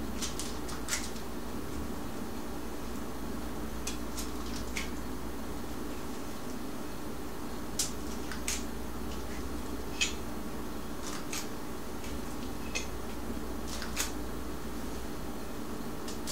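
Metal cookie scoop clicking and scraping as stiff batter is scooped from a steel pot and dropped onto a wax-paper-lined cookie sheet: a dozen or so light, scattered clicks and taps over a steady low hum.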